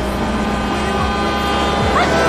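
A car's engine rumbling as it passes close by, under background music with long held notes.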